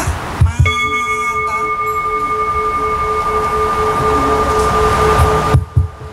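A Buddhist bowl bell struck once, ringing a long steady tone with a slow wavering pulse, then stopping abruptly about five and a half seconds in.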